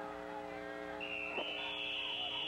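A referee's whistle blowing the play dead: one long, steady, high shrill tone starting about a second in and rising slightly in pitch partway through, over a steady low hum.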